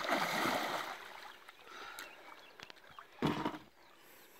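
A big carp thrashing free of the angler's hands at release, a loud splash and rush of water lasting about a second. A second, shorter splash of water comes a little over three seconds in.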